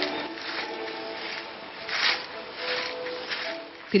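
Soft instrumental music with held notes, over the scraping and sweeping of dry dirt on an earthen floor, with a few rough swishes about two and three seconds in.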